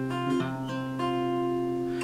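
Acoustic guitar with a capo at the third fret, fingerpicking the A-sus4 chord shape of a repeating picking pattern: the chord rings on, with fresh notes plucked about half a second and a second in.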